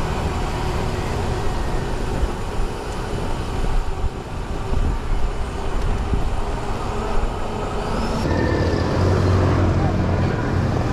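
Wind rumbling on the microphone and road noise from a bicycle riding along asphalt. A motorcycle engine running close by joins in with a steady hum about eight seconds in.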